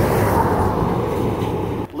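Steady roar of traffic passing on the interstate, which cuts off suddenly near the end.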